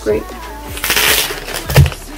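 Christmas wrapping paper crinkling for about half a second as it is folded around the end of a cylindrical gift, followed by a single dull thump near the end.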